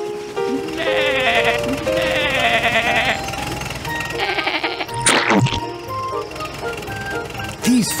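Cartoon background music with sheep bleating three times in a wavering cartoon style, and a brief sweeping sound effect about five seconds in.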